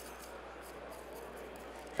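Faint, steady background noise with no distinct events: room tone in a pause between speech.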